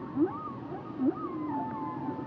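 Humpback whale song: short rising whoops alternating with higher moans that rise and fall, ending on a long falling tone, over a steady background hiss.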